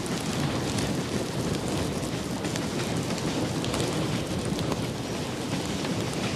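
Reading 4-8-4 steam locomotive No. 2102 and its passenger train under way: a steady, dense rumble with scattered crackling clicks and no distinct exhaust beats.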